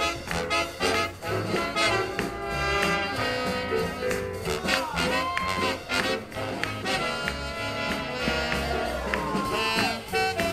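Live swing big band playing up-tempo swing music for Lindy Hop dancers, with a steady beat and a brass section. Horns bend notes downward about halfway through and again near the end.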